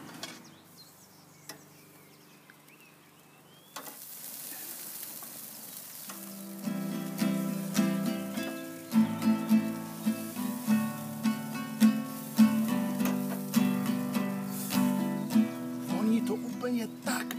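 Chicken wings start sizzling on a hot gas grill about four seconds in. Two seconds later guitar music with plucked notes and steady chords comes in over it.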